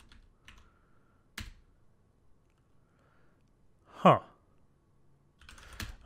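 Sparse keystrokes on a computer keyboard, with one sharper key press about a second and a half in and a few quick keystrokes near the end. A short spoken "huh" about four seconds in is the loudest sound.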